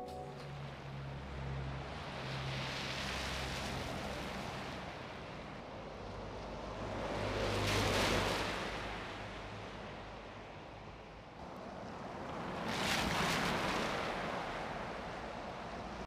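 A low steady hum under slow swells of rushing, surf-like noise that build and fade twice, loudest about halfway through and again near the end.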